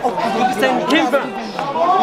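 Chatter of several men talking over one another at once in a close group.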